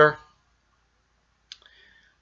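The tail of a man's spoken word, then dead silence, broken about one and a half seconds in by a single soft mouth click as he draws breath to speak again.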